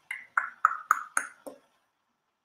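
A quick run of about seven short pitched clicks, roughly four a second, each dying away fast, the pitch dropping slightly over the run and stopping after about a second and a half.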